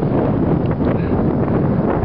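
Wind buffeting a handheld camera's microphone, a steady loud rumble.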